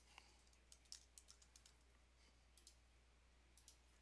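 Near silence broken by about a dozen faint, irregular clicks of a computer keyboard and mouse as values are typed into a form.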